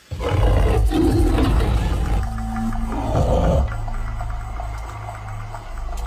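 A big cat's deep roar breaks in suddenly, surging again about three seconds in, over music with a sustained low drone.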